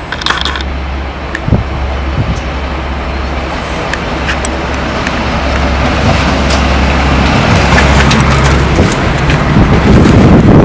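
Class 52 'Western' diesel-hydraulic locomotive D1015 approaching under power, its twin Maybach diesel engines giving a steady low drone that grows louder as it draws near.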